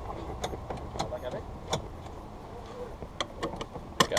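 Seatbelt being fastened in an open three-wheeled car's cockpit: a scatter of sharp clicks and rustles from the buckle and strap over a low steady rumble.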